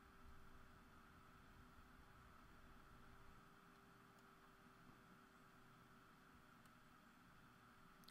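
Near silence: faint steady hiss with a low steady hum, the room tone of a recording.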